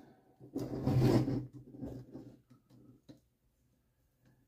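Light clicks and taps of a hex screwdriver and small screws being handled against an RC buggy chassis as a screw is started, after a louder, short low-pitched sound about half a second in.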